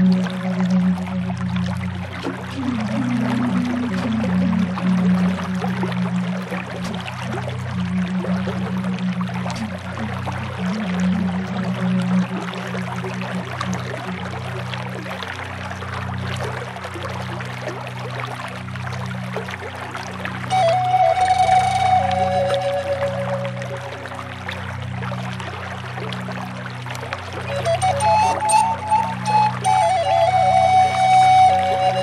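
Native American bass flute music in F# minor, low held notes, joined by higher alto flute phrases about twenty seconds in and again near the end, over a steady rush of flowing creek water.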